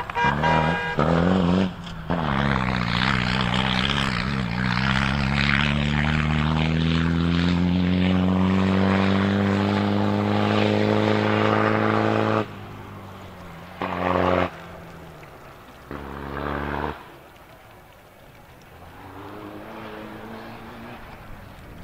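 Cross-country rally car engine under load, its pitch climbing slowly and steadily for about ten seconds before cutting off suddenly. Two short bursts of engine follow later, then quieter running.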